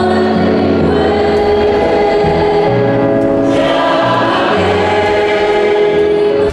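Church choir singing a hymn in slow, sustained chords, each held for a second or more.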